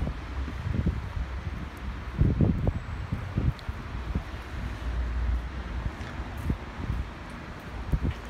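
Wind buffeting the microphone in irregular gusts, a low rumble that swells loudest a couple of seconds in and again near the middle.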